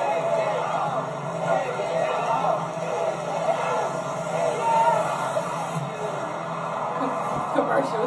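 Television game-show soundtrack: excited voices talking and exclaiming over background music, with no clear words.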